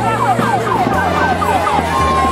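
An electronic siren wailing in quick, repeated falling sweeps, about six a second, over music with a steady low bass line.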